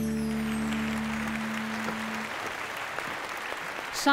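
The song's closing chord on piano and accompaniment, held and fading out, with the studio audience applauding; the low notes of the chord die away in the first two seconds or so, leaving the applause.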